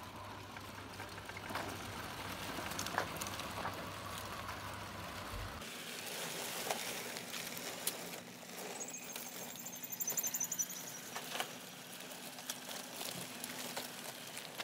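Scale RC semi-trucks driving over dirt: faint tyre crunch and small scattered clicks over outdoor background noise, with a brief high repeated chirping about nine seconds in.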